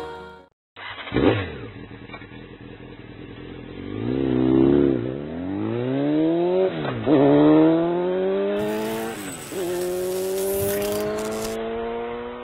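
Vehicle engine accelerating hard through the gears. A short rev comes about a second in; then the pitch climbs steadily, drops sharply at an upshift about seven seconds in and again about nine and a half seconds in, and climbs again after each.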